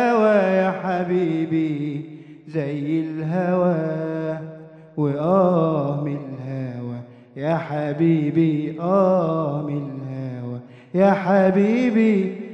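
A young man's solo voice singing unaccompanied into a microphone: long, wavering, ornamented Arabic vocal lines held for two to three seconds each, about five phrases separated by short breaths.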